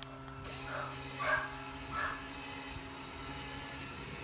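A dog barks three short times in the first two seconds over the steady hum of an electric swing-gate opener's motor, which is pushing a chain-link gate open.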